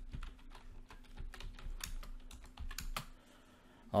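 Typing on a computer keyboard: a run of quick key clicks that stops about three seconds in.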